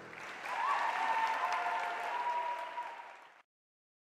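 Audience applauding at the end of a live song, with a held cheer rising over the clapping; the sound cuts off suddenly about three and a half seconds in.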